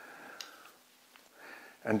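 Quiet handling of a small metal camera ball head, with a light click about half a second in and a fainter tick a little past the middle.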